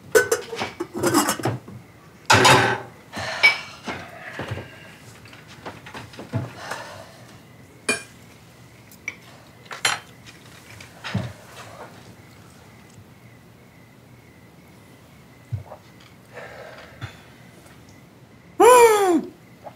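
Cutlery clinking and scraping on plates as people eat at a table: scattered sharp clinks, busiest and loudest in the first few seconds, then sparser.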